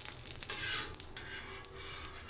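Egg-soaked bread slice sizzling in oil on a hot flat griddle pan, with a louder surge of sizzle about half a second in. Steel tongs rub against the griddle as the slice is lifted to be turned.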